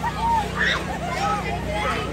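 Children's excited voices calling out and shrieking on a spinning tub ride, over the steady low hum of the ride's motor.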